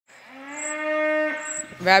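A sheep bleating once: one long baa held at a steady pitch, growing louder over its first half-second and stopping after about a second and a half.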